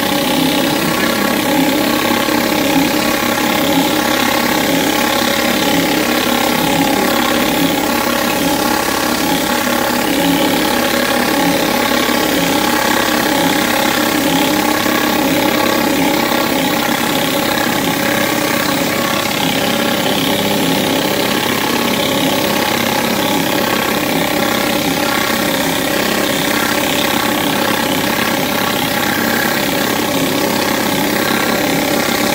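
Petrol-engine pressure washer running steadily, with water jetting under a rotary flat surface cleaner as it is worked over a wet timber deck.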